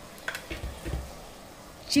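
A few faint low knocks of handling noise in the first half, otherwise quiet room tone.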